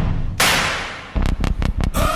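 Background music with percussion: a deep hit at the start, a sudden noisy swell that fades, then a quick run of sharp drum hits in the last second.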